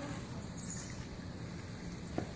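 Steady outdoor background noise, with one short, faint, high-pitched chirp about half a second in.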